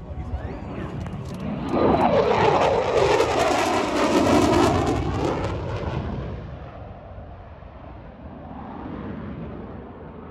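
Jet aircraft making a fast low pass. It swells sharply to its loudest about two seconds in, its pitch falls as it goes by, and it then fades away with a brief swell near the end.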